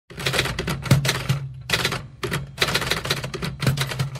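Typewriter keys striking in quick runs of clatter with short pauses between the runs, as a typing sound effect.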